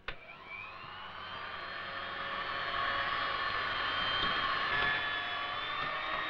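Electric hand mixer switched on with a click and running: its motor whine rises in pitch as it gets up to speed, then holds steady, growing louder over the first few seconds.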